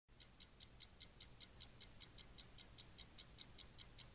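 A mechanical watch ticking steadily and faintly, about five light, high ticks a second.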